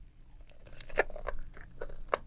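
Close-miked mouth sounds of biting into an octopus head and starting to chew. A run of small wet clicks begins about half a second in and is sharpest about a second in.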